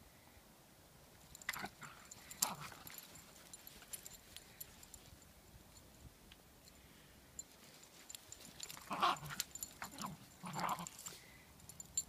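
Small dogs playing in deep snow, giving a few short cries: two about a couple of seconds in, and two more later, around nine to eleven seconds in.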